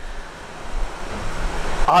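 A pause in a man's speech through a microphone, filled with a steady hiss and a low rumble; his voice comes back in right at the end.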